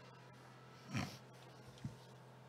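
A person's short, noisy breath into the microphone about a second in, over a steady low electrical hum, with a faint click shortly before the end.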